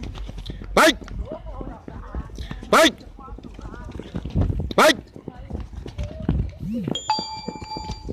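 A man shouting "Vai!" three times, about two seconds apart, with the quick patter of players' running footsteps on the court in between. A steady pitched tone sounds in the last second.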